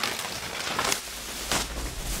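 Plastic protective bags rustling and crinkling as they are pulled off two studio monitors and bunched up by hand, with scattered crackles throughout.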